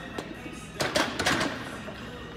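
A loaded steel barbell clanking several times in quick succession about a second in, as it is set back onto the squat rack's hooks, over background music.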